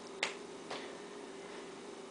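A sharp plastic click, then a fainter one about half a second later: the cap of a whiteboard marker being pushed back on after writing. A faint steady hum runs underneath.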